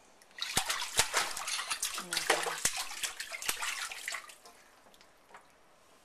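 Bath water splashing and slapping in a shallow stainless-steel kitchen sink as a baby beats at it with his hands: quick, irregular splashes for about four seconds, then it goes quiet.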